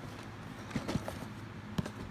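A few light knocks and taps from cardboard LEGO boxes being handled and shifted: a small cluster just under a second in and one sharper tap near the end.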